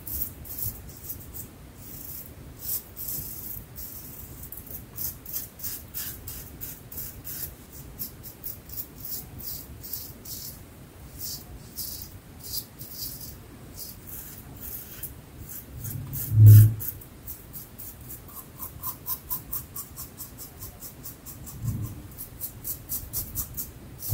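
Double-edge safety razor with a Treet platinum blade scraping stubble through lather in quick, short, repeated strokes, a crisp rasp with each pass. About 16 seconds in there is a single loud low thump.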